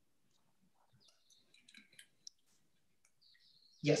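Near silence with faint scattered clicks from computer use, one sharper click a little past two seconds in.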